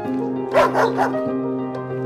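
Background music of steady held notes, with a dog barking three quick times about half a second in.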